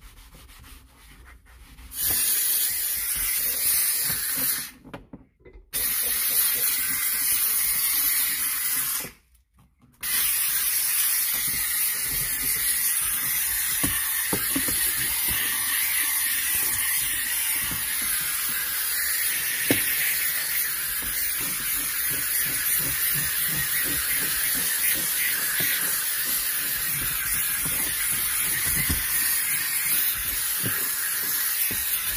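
McCulloch 1385 steam cleaner's wand hissing steadily as it jets steam. It starts about two seconds in, cuts out briefly twice, then runs on without a break.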